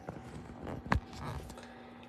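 Handling noise of a phone being repositioned on its camera mount: faint rustles and one sharp knock about a second in, followed by a faint steady hum.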